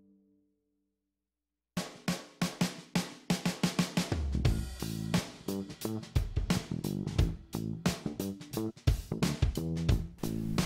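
Background music: after a moment of silence, a track of guitar, bass and drums comes in about two seconds in and carries on with a steady beat.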